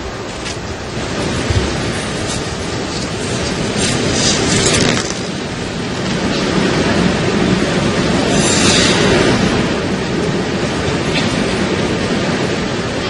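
Arena crowd applauding and cheering, a loud steady noise that swells twice.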